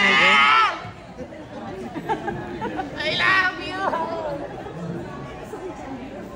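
Indistinct chatter of several people in a large room, broken by two loud, high-pitched voice calls: one right at the start lasting under a second, and a shorter one about three seconds in.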